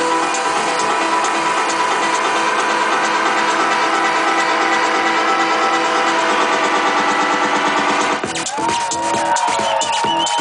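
Loud electro-techno played over a festival sound system, recorded from within the crowd with little bass. The dense, steady track breaks up about eight seconds in into sparser rhythmic hits with sliding high tones.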